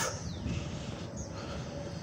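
Outdoor street ambience: a steady low rumble, with one faint short bird chirp about a second in.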